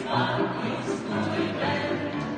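A small mixed group of men's and women's voices singing a song together.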